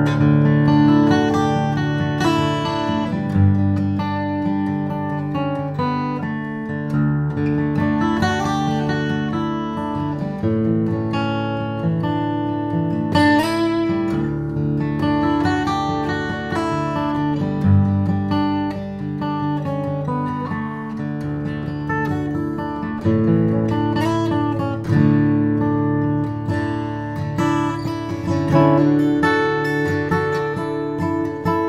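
A 1996 Martin custom dreadnought acoustic guitar, with an Adirondack spruce top and Indian rosewood back and sides, played solo. Chords and picked notes ring on over bass notes that change every few seconds.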